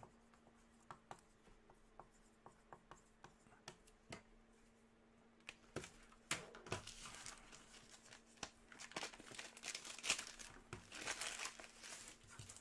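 Faint scattered taps and clicks, then from about halfway a trading-card pack's foil wrapper being crinkled and torn open.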